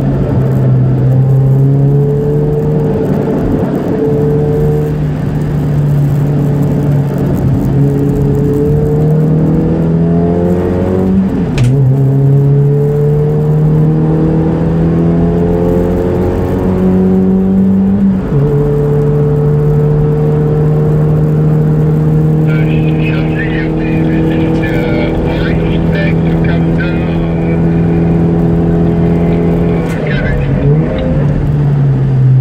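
Toyota Vios race car's four-cylinder engine heard from inside the cabin, pulling hard with its pitch climbing slowly. Two upshifts drop the pitch suddenly, a little over a third of the way in and again just past halfway.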